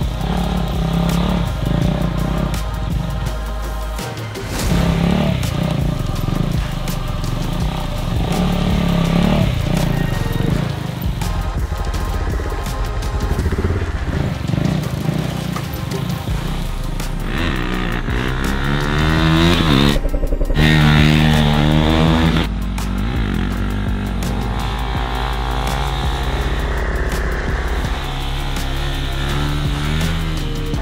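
KTM RC 390's single-cylinder engine revving during wheelies, with rising revs twice in the second half, mixed with background music.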